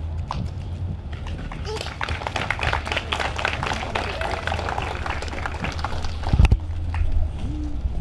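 A microphone being wiped down by hand, giving a dense, irregular rubbing and scraping handling noise for several seconds. It ends with a loud bump on the mic about six seconds in, over a steady low hum from the sound system.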